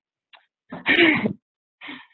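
A person's short, breathy vocal outburst about a second in, followed by a fainter, briefer one at the end.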